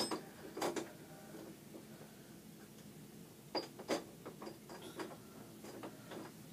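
Doorknob and latch of an interior door being worked, giving scattered sharp clicks and rattles, the loudest two close together about halfway through, as the stuck latch fails to release the door.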